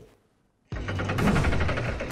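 A moment of silence, then a sudden, loud, dense rattling sound effect with music under it: the sting that accompanies an animated title card.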